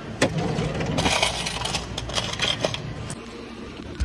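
Coins clinking and jingling as change is counted out by hand, with a few sharp clinks over the first three seconds.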